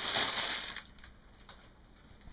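A brief crinkling rustle that fades out within the first second.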